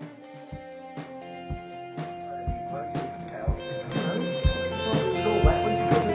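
A band's improvised jam building up: guitar notes held over bass, with a low drum thump about once a second, getting steadily louder.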